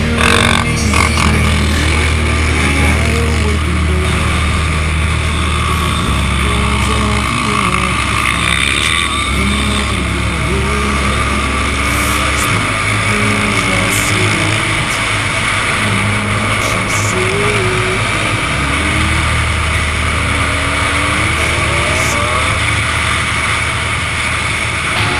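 Three-wheeled ATV engines running on the move, their pitch rising and falling as the throttle is worked, over a steady low rumble.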